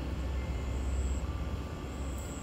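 Low steady background rumble with faint hiss, swelling slightly around the middle.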